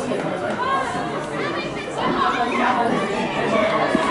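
Overlapping chatter of several spectators talking at once close to the microphone, with no single voice standing out clearly.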